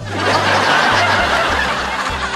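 Canned laughter from a laugh track, a dense burst of many laughing voices that swells in just after the start, over background music with a steady bass line.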